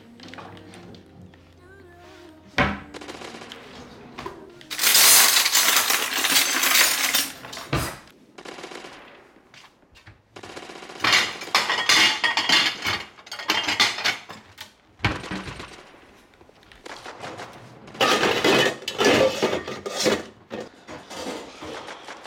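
Loud kitchen clatter, with cabinet doors banged and dishes knocked about and three sharp bangs spread through, mixed with bursts of video-game gunfire and game music.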